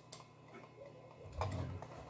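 Computer mouse button clicked twice in quick succession, a double-click, over a faint steady hum.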